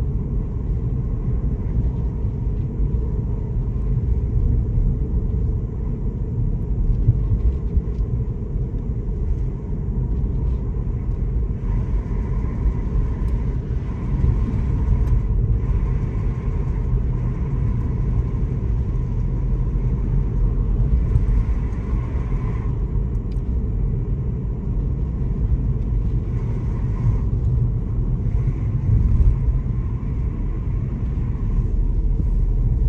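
Steady low rumble of a car driving, engine and tyres on the road heard from inside the cabin.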